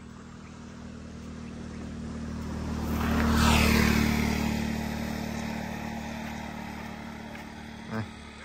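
A motor vehicle passes along the road. Its engine hum and road noise grow louder to a peak about three and a half seconds in, then slowly fade away.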